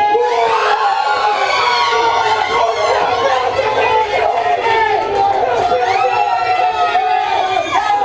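A small group of men, women and children in a room shouting and cheering wildly together, with long held yells, erupting just after the start: the celebration of a winning penalty goal.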